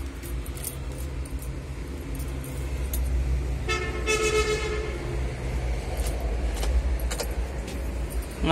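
A steady low rumble with light clicks and rattles of handling inside a tractor cab, and one horn-like beep about four seconds in that lasts just over a second.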